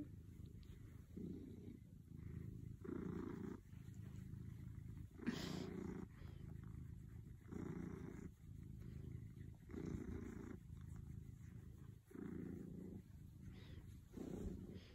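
Domestic cat purring softly while being scratched on the head, the purr swelling and fading in even pulses roughly every second or so. A brief louder noise comes about five seconds in.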